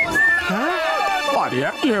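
Soundtrack of a Hindi animated cartoon: a character's voice that sweeps widely up and down in pitch.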